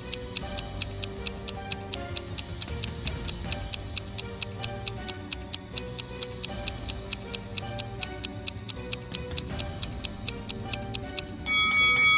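Countdown-timer ticking sound effect, quick even ticks about five a second, over soft background music. Near the end a bright chime rings out as the timer runs out.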